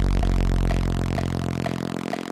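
Electronic dance music: a sustained low synth bass note that fades away near the end, with a short higher blip about twice a second.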